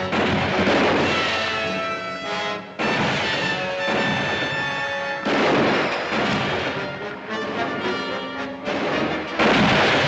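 Rifle shots in a gunfight, about four of them a few seconds apart, each with a falling ricochet whine off rock, over an orchestral film score. The last shot, near the end, is the loudest.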